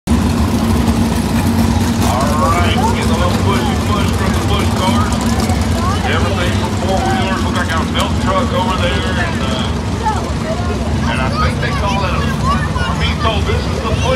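Winged sprint cars' V8 engines running on a dirt oval, a loud steady drone, with people talking close by over it.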